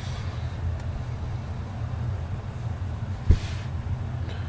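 Steady low hum of background noise picked up by the microphone, with a single short thump about three seconds in.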